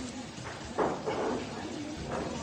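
A woman's short, muffled vocal sound with her mouth full of cake, about a second in, over low room noise.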